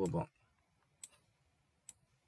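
Two sharp computer mouse clicks a little under a second apart, while a passage of on-screen text is selected.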